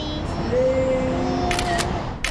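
A smartphone camera's shutter sound goes off once, about one and a half seconds in, after a stretch of steady held tones.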